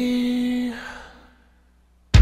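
A man's voice holding the last sung note of the line on one steady pitch, ending under a second in and fading away, followed by silence.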